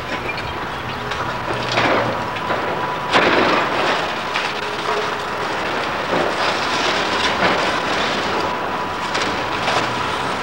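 Demolition excavator tearing down a brick building: its diesel engine runs steadily under a clatter of breaking timber and falling brick, with several sudden crashes of debris.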